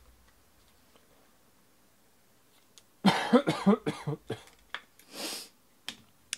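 A person coughing several times in quick succession about halfway through, followed by a short, noisy intake of breath.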